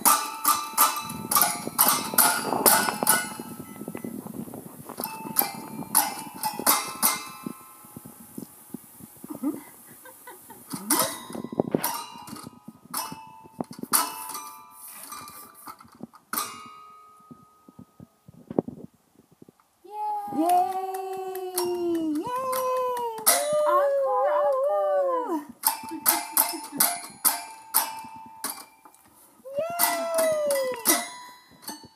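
Toy piano keys banged by a baby, a scatter of plinking notes and clusters in uneven bursts with short pauses. About twenty seconds in, the banging stops and the baby gives several high, wavering vocal squeals over a few seconds, then the banging starts again.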